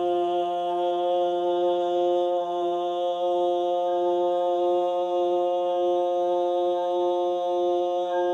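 A steady musical drone held on one low note, rich in overtones, sustained unbroken and at an even volume as a meditation backdrop.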